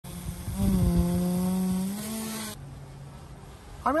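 FLIR Black Hornet nano-helicopter drone's rotor motor buzzing with a steady pitch, bending up slightly before it cuts off suddenly about two and a half seconds in. A much fainter low hum of the small drone in flight follows.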